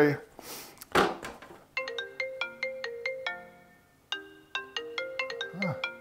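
A mobile phone's ringtone: a quick melody of short notes that plays through once, pauses for under a second, then starts over.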